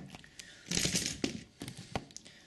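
Handling noise: a brief crinkling rustle about a second in, with a few light clicks and taps.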